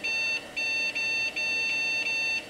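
PC speaker beeping over and over, a run of identical buzzy beeps of about a third of a second each with short gaps. These are the bell characters set off as the virus dumps a file's raw bytes to the screen as text.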